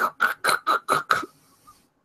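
A person's voice making a quick run of six short, clipped sounds, about five a second, imitating a microphone's crackling distortion.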